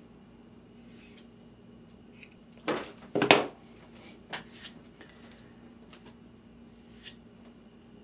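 Short, hard clicks and scrapes of a solid block of melted HDPE plastic being turned over and handled in the hands, loudest about three seconds in, over a faint steady hum.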